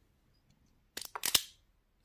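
Hand cutters snipping heat shrink tubing: a quick run of sharp clicks and snaps about a second in, after a near-silent start.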